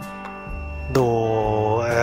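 A man's voice drawing out a held hesitation sound, then a long, stretched spoken syllable about a second in, over faint background music.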